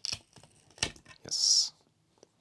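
A plastic-cased power supply's circuit board being pried free of its case: a few light clicks and one sharper click, then a short high-pitched scrape, the loudest sound, as the board comes loose from the bottom it was stuck to.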